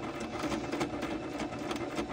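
Singer electric sewing machine running steadily, stitching a torn fabric strip with a fast, even needle rhythm.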